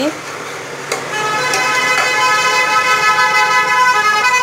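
A steady, pitched horn-like tone starts about a second in and holds unbroken for several seconds. A few light clinks of steel kitchen utensils sound near the start.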